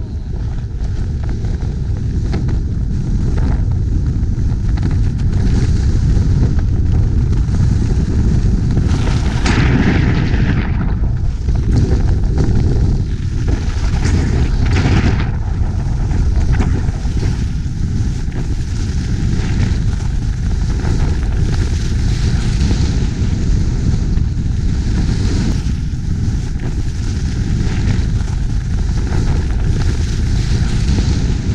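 Wind buffeting a GoPro's microphone on a fast ski run, a heavy steady rumble, with the hiss of skis on snow swelling in surges about ten and fifteen seconds in.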